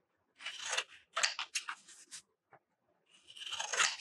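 Scissors snipping through paper in a few short runs of quick cuts, the longest and loudest run near the end.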